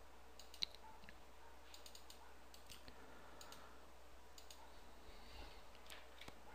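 Near silence with a few faint, scattered clicks from someone operating the computer as a web address is entered into the browser. The sharpest click comes just over half a second in.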